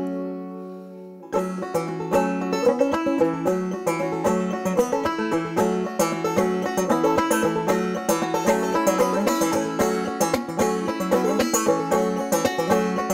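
Solo banjo: a chord rings and fades, then about a second in, fast picked playing starts, the instrumental introduction to the song.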